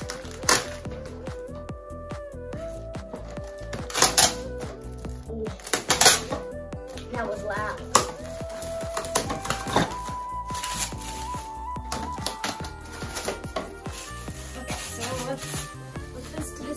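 Background music with a simple stepping melody, over crackling and rustling of plastic wrap being pulled off a paint roller and tray kit. Several sharper crackles stand out about 4, 6 and 8 seconds in.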